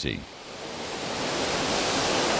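Surf on a sandy beach: waves washing ashore, a steady rush of noise that swells up over the first second and a half and then holds.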